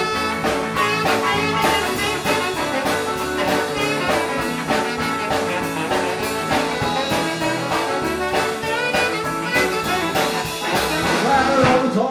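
A live rock and roll band playing an instrumental break with no vocals: a saxophone carries the lead over upright bass, electric guitar and drums keeping a steady beat.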